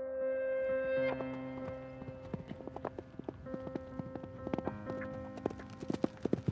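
Hoofbeats of a galloping Camargue horse, starting about a second in and growing quicker and louder toward the end, over background music of long held notes.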